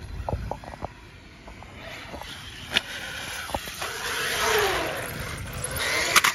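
Traxxas Sledge RC monster truck's brushless electric motor whining and its tyres rushing on concrete. The sound swells about four seconds in with a falling whine, and there is a single sharp knock about three seconds in.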